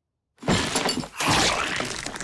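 Cartoon sound effect of a tableful of food and dishes being swept up: a sudden loud clattering crash in two bursts, starting about half a second in.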